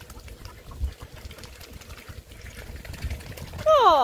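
Mute swans feeding at the water's edge, their bills dabbling in the shallow water with faint, rapid splashing over a low rumble.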